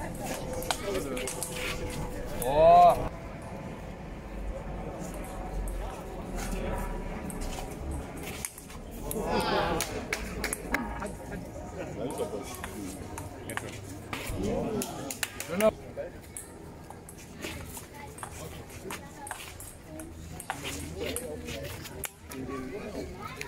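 Table tennis rally on an outdoor concrete table: a quick, irregular run of ball clicks off bats and tabletop. Voices around it, with one loud short call about three seconds in.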